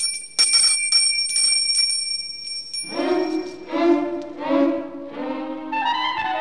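A doorbell rings continuously for nearly three seconds, then stops. A short music interlude of a few held notes stepping from one to the next begins just after.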